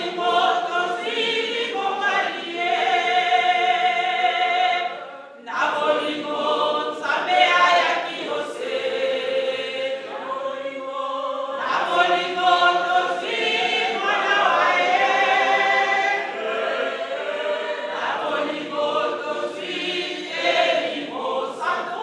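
Unaccompanied hymn sung by a mixed choir of men's and women's voices, with a woman's voice leading over a microphone. It goes in phrases of about six seconds, with short breaks between them.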